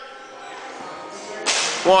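Kneeling jump onto a plyometric box: after a quiet lull, one short, sharp swish about one and a half seconds in as the athlete springs from his knees and lands on the box top.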